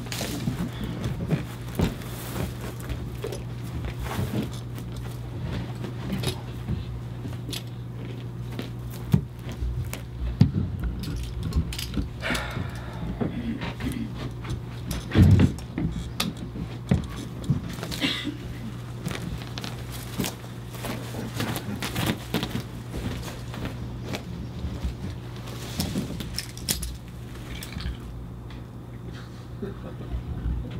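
Scattered metallic clinks, clicks and scrapes of a tin can being handled and worked open by hand, with a few louder knocks, over a steady low hum.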